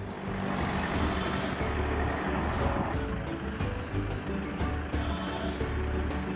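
Steady road noise of a car driving along a city road, with background music underneath.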